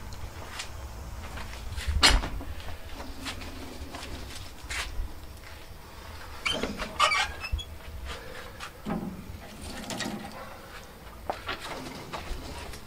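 Scattered clicks and metal knocks from handling a small charcoal-fired outdoor oven and opening its door, the loudest knock about two seconds in and a cluster of clicks midway. A low rumble of wind on the microphone runs underneath.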